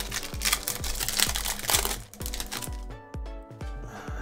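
A trading-card pack's foil wrapper crinkling as it is torn open and the cards are pulled out, mostly in the first half, over background music with a steady beat.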